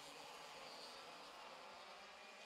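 Faint, steady buzz of racing kart two-stroke engines on track, heard low in the broadcast mix.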